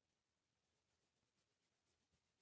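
Very faint quick back-and-forth strokes of an eraser rubbing on paper, about six a second, starting about half a second in: pencil guidelines being erased from a journal page.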